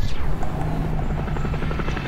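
Helicopter flying overhead, its rotor chop and engine coming in suddenly and then running steadily.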